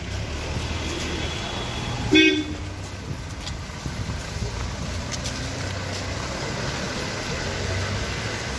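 Vehicle engine running with a steady low rumble as an SUV pulls away along a street, with one short, loud horn toot about two seconds in.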